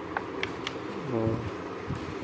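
A steady buzzing hum in the background, with a few short faint high chirps in the first second.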